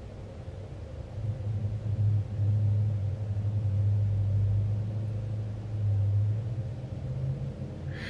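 A low rumble that builds about a second in, holds steady, and fades away near the end.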